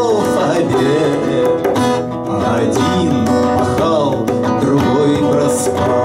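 Live acoustic song: a steel-string acoustic guitar strummed and picked, with a man's voice singing over it.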